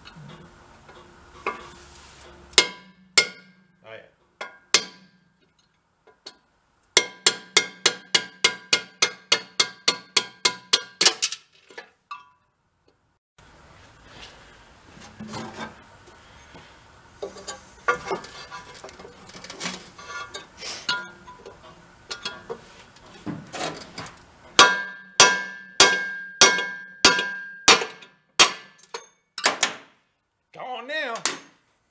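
Hammer blows driving rusted pins out of an Ariens snow blower's auger shaft. The steel rings with each strike, in fast runs of about four blows a second with pauses between runs.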